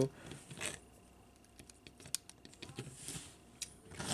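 Faint, scattered clicks and taps of the hard plastic parts of a Transformers Swoop action figure being handled and pegged together, the sharpest click about two seconds in.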